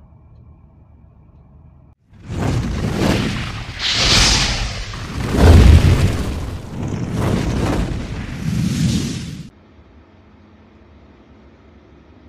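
Sound effects of an animated logo intro: a run of loud booming whooshes and bursts swelling and fading for about seven seconds, the deepest and loudest boom about halfway through. Before and after it, only a faint steady hum.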